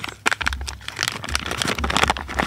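Clear plastic zip-top bag crinkling and crackling as it is handled, a rapid run of small sharp crackles.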